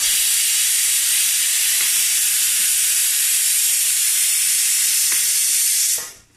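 A loud, steady hiss that starts and stops abruptly.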